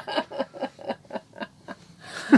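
A woman laughing: a run of quick, short laughs, several a second, that fades away over about two seconds.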